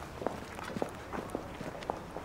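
Irregular footsteps on a hard pavement, short clicks several a second.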